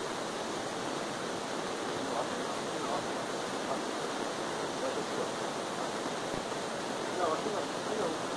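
A steady rushing hiss throughout, with faint voices now and then in the background.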